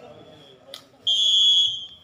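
Referee's whistle blown once in a steady high blast of about a second, the signal to serve, with a faint short toot and a sharp click just before it.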